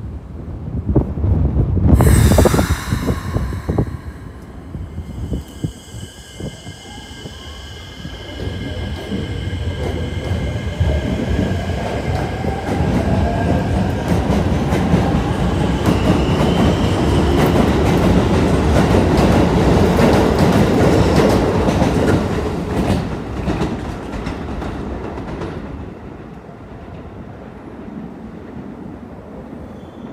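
Keikyu New 1000 series electric train pulling out of the station: a loud burst with high ringing tones about two seconds in, then a motor whine rising in pitch as it accelerates, and the cars rolling past, loudest past the middle and fading away near the end.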